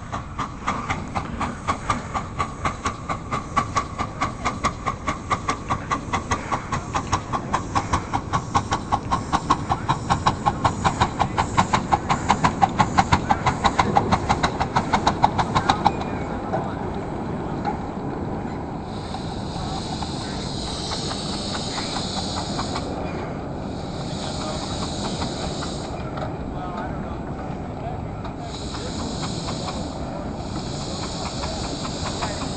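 Ride-on scale live-steam locomotive chuffing at about three beats a second, growing louder as it comes closer, then cutting off sharply about halfway through. After that the engine stands hissing steam, with several louder bursts of hiss a few seconds long.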